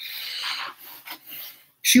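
A rasping, rubbing noise lasting under a second, followed by two fainter, shorter rubs.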